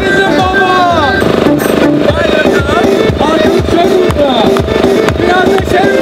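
Electronic keyboard playing a lively Turkish-style dance tune, with bending, wavering melody notes over a steady programmed drum beat, played loud through amplification.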